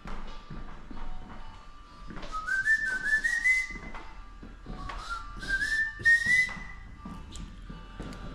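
A whistled tune: two short phrases, each climbing in small steps, about two and a half seconds apart.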